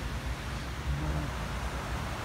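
Outdoor background noise: a steady low rumble with an even hiss, and a short faint voiced hum about a second in.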